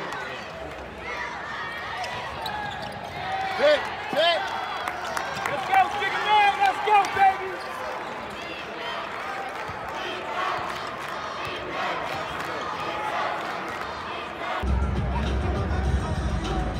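Live basketball game in a large arena: a ball bouncing on the hardwood court, squeaks and crowd voices over a steady hum of the hall, with a cluster of short squeals a few seconds in. Background music comes in near the end.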